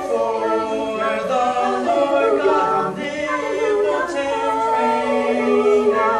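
A small mixed group of young men and women singing unaccompanied in close harmony, with several voices holding and moving notes together.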